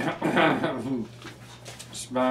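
A man's short wordless vocal sound in the first second, then faint paper rustles and light taps as he leafs through songbook pages on a music stand.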